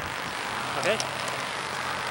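Steady road-traffic noise with a low engine hum under it, and a brief click about a second in.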